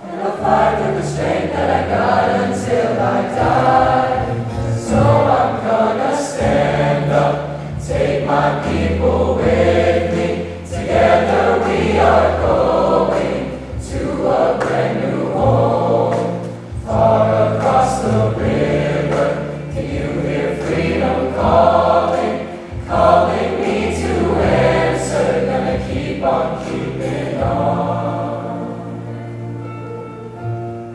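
A large mixed choir of teenage voices singing in full harmony, in phrases that swell and ease, softening toward the end.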